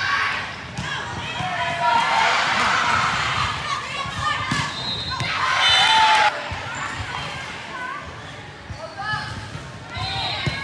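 Volleyball rally in a large echoing gym: players and spectators shouting, with repeated thuds of the ball and feet on the hardwood floor. A loud burst of shouting and cheering about five seconds in cuts off suddenly just after six seconds.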